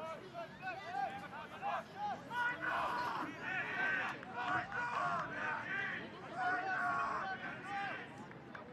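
Several voices at a soccer match shouting and calling out over one another, with low crowd chatter behind.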